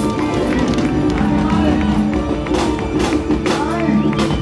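Live band music from a carnival dance orchestra, with electric guitar and a drum kit: steady held notes under the beat, with a run of sharp drum and cymbal hits in the second half, and voices over it.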